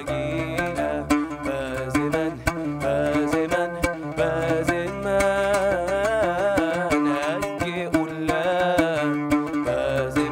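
A man singing a melismatic song from the Syrian Jewish repertoire, his voice wavering through ornamented turns, accompanying himself on a plucked oud-style lute.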